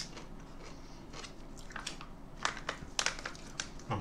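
Chewing a bite of Van Holten's Tapatio pickle, with a series of short, irregular crunches starting about a second in.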